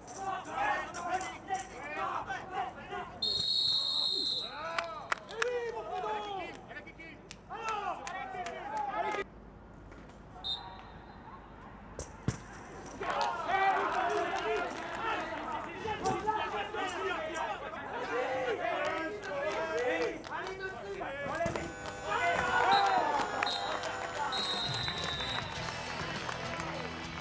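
Voices shouting across a blind football pitch, broken by shrill referee's whistle blasts: one of about a second near the start, a short one in the middle, and a run of short blasts ending in a longer one near the end, the final whistle as the clock reaches zero.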